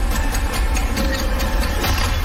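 Trailer sound design: a loud, deep, steady low rumble with rapid clicks and hits layered over it.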